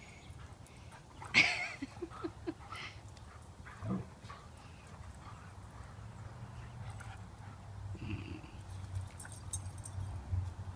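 Siberian husky and German shepherd play-fighting, with one loud, short yelp about a second and a half in, followed by a few shorter, quieter dog noises.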